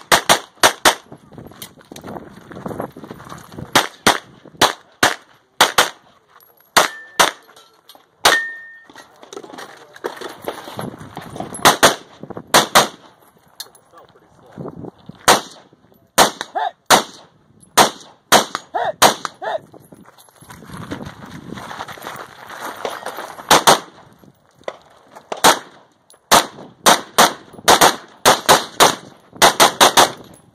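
Gunfire in a practical-shooting stage: quick strings and pairs of shots, several clusters separated by short pauses, with an AR-style rifle firing during the middle and later clusters. Two brief high rings sound about 7 and 8 seconds in.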